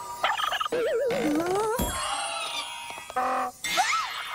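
Comic cartoon sound effects for magically forced, clumsy runway moves: a wobbling warble about a second in, then rising whistle-like glides. A short buzzy tone follows a little after three seconds, and a quick upward sweep comes near the end.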